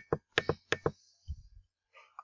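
A computer mouse's scroll wheel clicking as a page is scrolled: a few separate sharp ticks in the first second, then a soft low thump.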